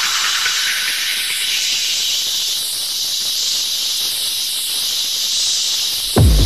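White-noise riser in a techno track: a steady hiss whose low end thins out as a filter sweeps upward, with a slow swirling sweep in the highs and the drums dropped out. It is the build-up before the beat returns.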